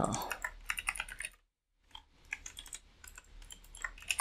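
Computer keyboard typing: a run of quick key clicks, a brief pause about a second and a half in, then lighter, sparser typing.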